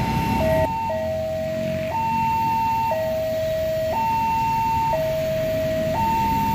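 Electronic two-tone level-crossing warning alarm, alternating a higher and a lower tone about once a second, sounding as a train approaches.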